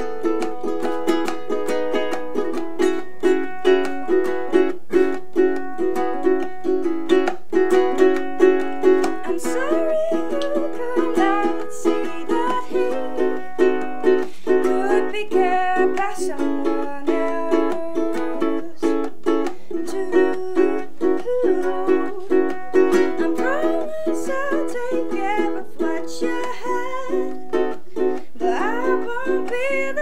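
Ukulele strummed in a steady rhythm of chords, with a woman's singing voice coming in over it about ten seconds in.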